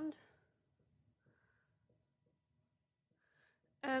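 Faint marker strokes on a whiteboard, with two short scratches, one about a second in and one near the end.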